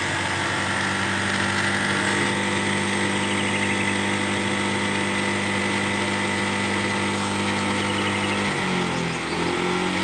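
An engine running steadily with an even hum, whose pitch shifts about eight and a half seconds in.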